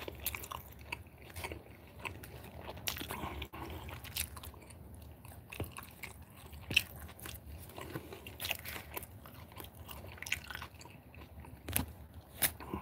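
A person chewing food close to the microphone: a run of irregular soft clicks, smacks and small crunches.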